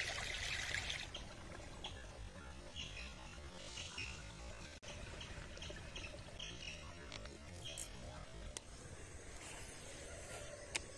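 Shallow stream water trickling, loudest in the first second and then fainter, with scattered brief faint chirps.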